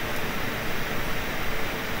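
Steady, even hiss of room tone in a lecture hall.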